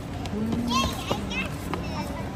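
A young child's voice calling out in short, high, wordless calls that rise and fall, over a background of other voices.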